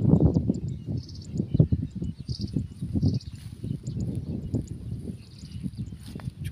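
Open-field ambience: irregular low rumbling of wind buffeting the microphone, with short high chirps of insects repeating every second or so over a faint steady high insect drone.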